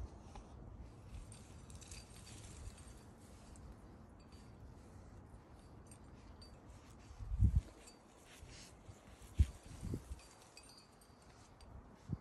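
Faint, scattered clinks of metal climbing gear with rope being handled at the belay. Three short low thumps come in the second half, the loudest about seven and a half seconds in.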